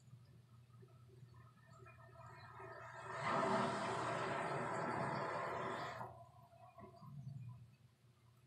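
Hand-held hair dryer blowing in one burst of about three seconds, building up over its first half second and cutting off suddenly.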